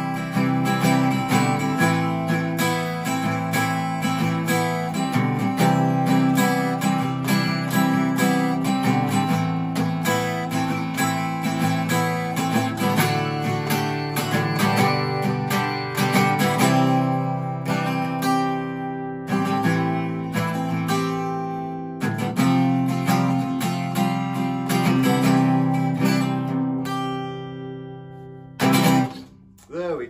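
Alvarez AF30CE cutaway electro-acoustic guitar played acoustically, picking and strumming chords on worn but bright-sounding strings. The playing eases briefly past the middle and lets notes ring away near the end, followed by two sharp strums.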